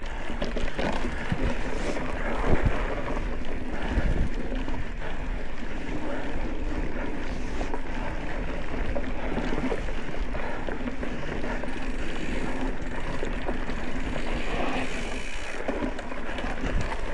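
Mountain bike riding along a dirt singletrack: tyres rolling over dirt and pine needles, the bike rattling over bumps, with wind noise on the microphone. A couple of harder knocks from bumps come a few seconds in.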